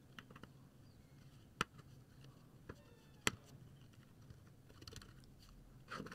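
Knob caps pressed onto the rotary encoders of a small custom keyboard: two sharp plastic clicks about a second and a half apart, with a few fainter clicks and taps around them.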